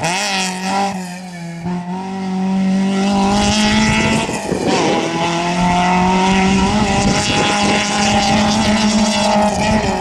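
Peugeot 205 GTI rally car's four-cylinder engine pulling hard under full acceleration as the car drives away, its note climbing, dropping at a gear change about halfway through, then climbing again.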